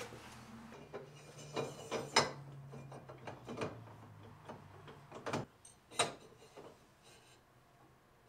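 A few sharp metal clicks and knocks as a shallow-water anchor's jack plate bracket and its bolts are handled and fitted, over a low steady hum that stops about five seconds in.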